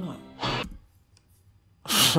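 A short breathy sigh about half a second in, right after the end of a spoken line, followed by near quiet.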